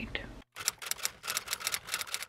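A whispered voice cut off suddenly, then a quick run of typewriter key strikes, about six or seven clicks a second: a typing sound effect.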